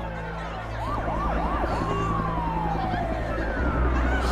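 Emergency vehicle siren: a few quick rising-and-falling yelps about a second in, then a long, slowly falling wail, over a low steady drone.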